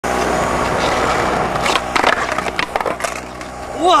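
Skateboard wheels rolling on pavement, then several sharp knocks and clatter of the board hitting the ground about halfway through. A shout of "Whoa!" comes at the very end.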